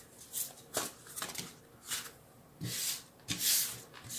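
Tarot cards being shuffled and handled by hand: a string of short papery swishes, the loudest near the end.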